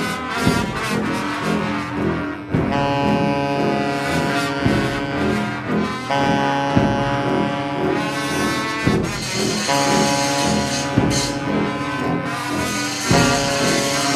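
Large mixed ensemble of reeds, brass, bowed strings and percussion playing loud sustained chords over a repeating low figure, with sharp percussive accents every second or two.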